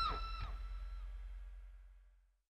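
The final chord of a heavy metal track on electric guitar and bass ringing out and fading to silence, with a few short falling pitch slides in the first half second.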